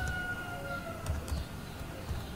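A faint distant siren, one slow wailing tone that rises and then falls away, with a few computer keyboard key clicks about a second in.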